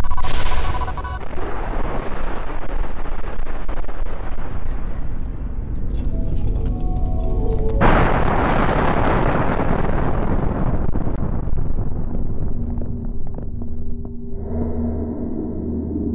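Music over the noise of a tall steel tower collapsing in a demolition implosion, with a sudden louder surge of noise about eight seconds in that dies away, and the music's steady tones coming back near the end.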